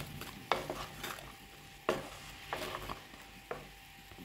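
A wooden spoon stirring small onions and tomato paste frying in oil in a clay pot: a soft sizzle, with about four sharp scrapes and knocks of the spoon against the clay.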